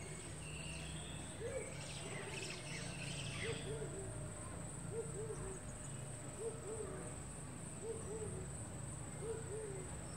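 A bird repeating a low two-note hooting call about every second and a half, over a steady high insect trill. A few higher bird chirps come about two to three and a half seconds in.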